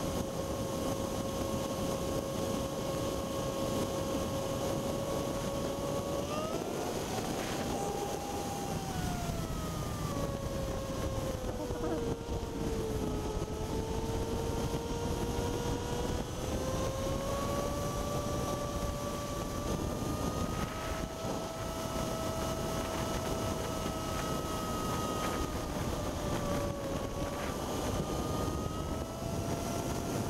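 Motorcycle engine running at freeway speed, with wind rushing over the microphone. The engine's note rises about six seconds in, sinks lowest a few seconds later, then climbs back and holds steady.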